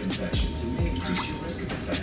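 Half a cup of water poured from a glass measuring cup into a large empty skillet, splashing and dripping, over background music with a steady deep beat.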